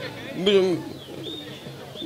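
A man's brief hummed vocal sound, a single short 'mm' that rises and falls in pitch, close to the microphone between phrases of speech.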